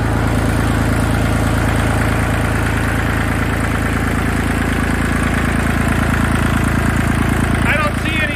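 Kubota D1703 three-cylinder direct-injection diesel running steadily. It is running just after its injection pump was refitted with one factory shim removed, which advances the injection timing.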